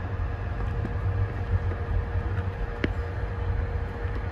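Passenger train carriage heard from inside as the train rolls slowly through a station: a steady low rumble with a faint constant hum, and one sharp click a little under three seconds in.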